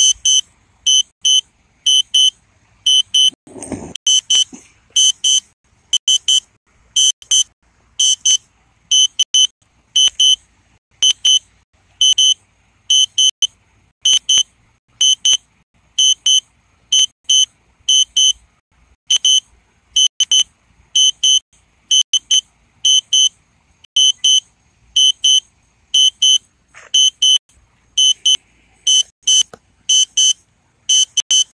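An electronic warning beeper giving short, high-pitched beeps in quick pairs, about once a second, without a break. A brief low rumble cuts in about four seconds in.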